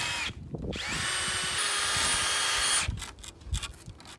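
Cordless drill boring into a pressure-treated wood frame: a brief burst, then a run of about two seconds whose whine rises and holds steady before stopping. A couple of low knocks follow near the end.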